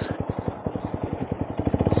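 Honda Grom's single-cylinder four-stroke engine and exhaust running at low revs, an even, rapid pulsing beat that quickens and grows louder near the end as the bike pulls away.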